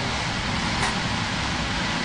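Glassblowing bench torch burning with a steady rushing noise.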